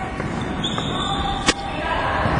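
Gym hubbub of players' voices, with one sharp smack of a volleyball being hit or bouncing about a second and a half in.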